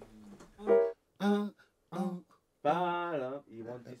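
A voice singing a short wordless melodic line in a few brief phrases; the last phrase is longer, with a wavering, bending pitch.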